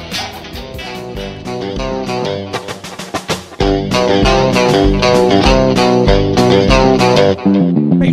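Live rock band playing an instrumental passage led by electric guitar, with no singing. About three and a half seconds in, the music comes in louder and fuller, with bass and a steady low beat.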